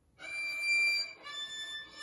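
Violin played with the bow: after a brief silent rest, a high note is bowed and held for about a second, then shorter notes follow.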